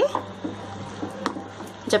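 A spoon stirring syrup-soaked boondi in a kadhai over high flame: soft wet squishing and scraping, with a few faint clicks of the spoon against the pan, over a low steady hum.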